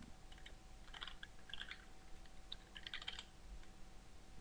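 Faint typing on a computer keyboard, a few short runs of keystrokes.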